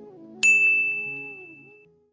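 A single bright bell-like 'ding' sound effect, the chime of a subscribe-button animation, striking about half a second in and ringing down over about a second and a half, over soft background music.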